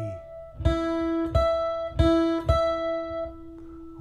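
Steel-string acoustic guitar: four single notes picked about two-thirds of a second apart, the last one left ringing and slowly fading.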